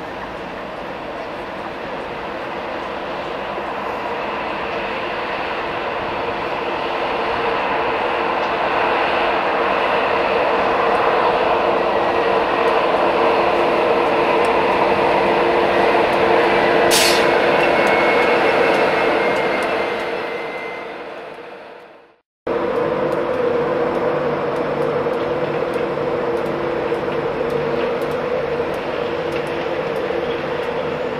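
A GNER InterCity 225 electric train, led by a Class 91 locomotive, runs into the platform. Its noise builds steadily to a peak, with a sharp click and a brief high tone at the loudest point, then fades away. After a sudden cut, an EWS Class 37 diesel locomotive approaches, its English Electric V12 engine running steadily with a pitched note.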